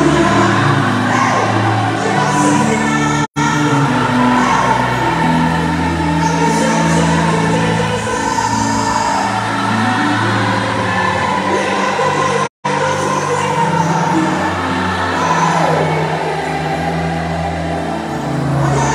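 Live gospel music: a lead singer over a full band with a steady bass line. The sound cuts out completely twice, very briefly.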